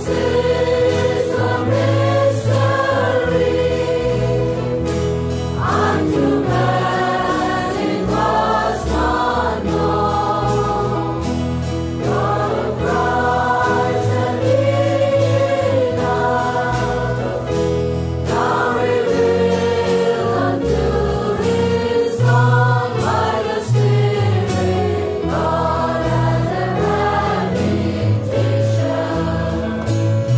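Gospel music: a choir singing a Christian song over instrumental backing with a low bass line and percussion.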